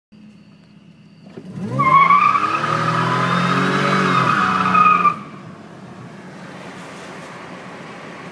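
Supercharged 3.8-litre V6 of a 1998 Buick Regal GS floored from idle about a second and a half in: the engine revs hard and the tyres squeal steadily as the front wheels spin for lack of traction. About five seconds in the throttle comes off and the sound drops suddenly to quieter running.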